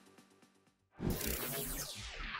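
The tail of electronic music dies away into silence. About a second in, a noisy transition sweep starts, its pitch falling as it goes.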